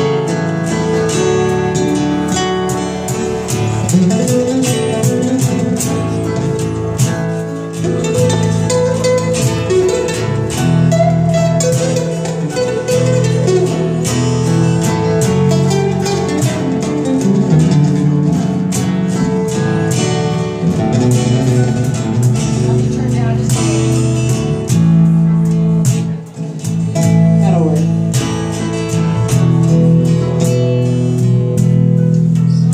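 A live band playing: strummed acoustic and electric guitars over a steady beat of hand percussion and cymbal.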